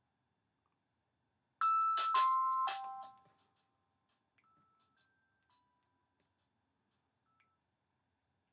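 A three-note descending chime, each note starting sharply and ringing out, dying away over about two seconds. A few much fainter single tones follow.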